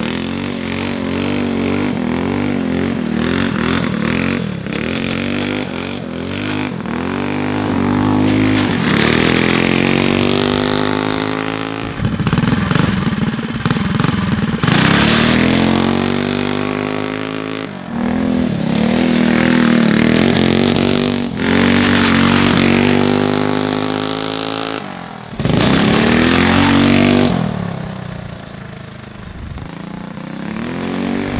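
Small single-cylinder go-kart engine with a torque converter, revving hard as the kart accelerates, its pitch climbing and then dropping off about half a dozen times as it passes. The riders put this much low-end torque down to the new torque converter driver and hot cam, and say it is making the chain skip on the sprocket.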